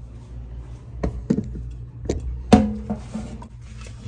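Handling noise: a few short knocks and clunks, the pots and phone being moved about, over a low steady hum.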